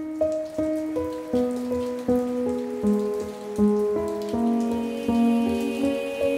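Rain pattering on a wet surface under gentle instrumental music, with clear plucked or struck notes arriving about twice a second.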